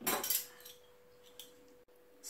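Brief clinks of a metal whisk against a glass mixing bowl of stiff meringue in the first half-second, then near quiet with a faint steady hum.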